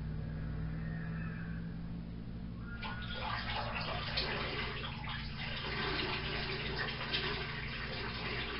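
A man urinating into a toilet bowl: a splashing stream into the water starts about three seconds in and keeps going, over a low steady hum.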